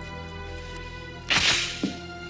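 Film score holding sustained chords, cut into about a second and a half in by a sudden loud whip-like swish and a short thud just after it.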